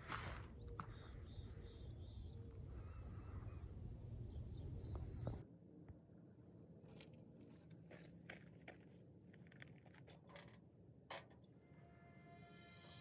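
Footsteps on a dirt road under a steady low rumble from the hand-held camera, for about five seconds. Then a sudden cut to quiet outdoor stillness with scattered faint ticks and clicks.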